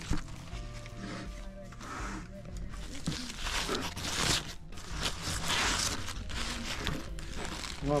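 Soft background music, with paper and foil takeaway food wrappers crinkling in two bursts about three and five seconds in.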